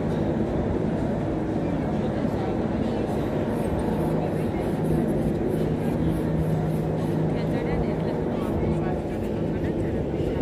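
Steady low mechanical hum of the ropeway's cable-car machinery running, with people's voices faint in the background.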